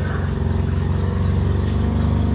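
A steady low motor hum with no change in pitch or level.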